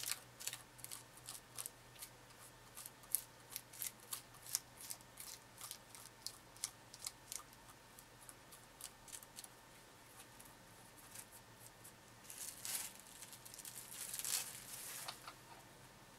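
Faint, quick scratching strokes of a small sculpting tool cross-hatching clay through plastic cling wrap, two or three strokes a second. Near the end come a few seconds of longer rustling as the cling wrap is peeled off the clay.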